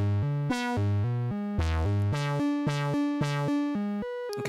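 Doepfer A-100 modular synthesizer playing a quantized random note sequence: a VCO stepping up and down between pitches about four times a second. Some notes open bright and quickly dull as an envelope sweeps the filter.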